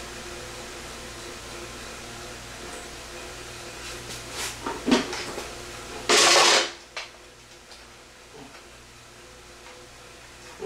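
Handling noise from an electric scooter's handlebar stem as a tight wiring connector is worked through it: a few sharp clicks and knocks of the parts about four to five seconds in, then a loud half-second scrape about six seconds in.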